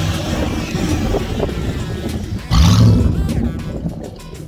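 Pontiac G8 GT's 6.0-litre V8 through aftermarket headers and exhaust, with music playing underneath. About two and a half seconds in, the engine is suddenly revved hard, the note rising, and it eases off over about a second.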